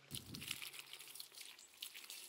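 Faint rustling and crackling of compost being stirred by a gloved hand in a plastic bucket, with a soft thump just after the start.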